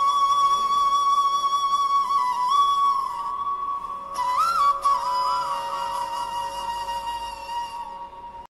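Intro music: one instrument playing a slow solo melody of long held notes with quick ornamental turns, growing quieter near the end.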